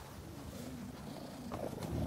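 Hairless cat purring close to the microphone, a steady low rumble. A louder rustle and a click come near the end.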